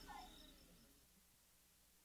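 Near silence as an outdoor field recording fades out. A brief falling cry comes just at the start, and a faint high chirp repeating about five times a second dies away within the first second, leaving only tape hiss.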